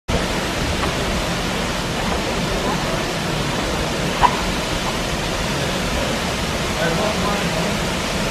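Steady rushing of a waterfall pouring down a rock face into a pool, with faint voices of people nearby and one brief sharp sound about four seconds in.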